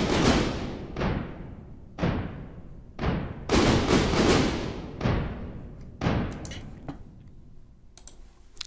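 Big cinematic trailer drums playing back: Iconica orchestral toms reworked in Steinberg's Backbone drum sampler, a doubled synth tom layer with a dry tom on top, plus a synth snare made from grouped Iconica snares. Heavy hits about one a second with long reverberant tails, and a quick flurry of hits around the middle.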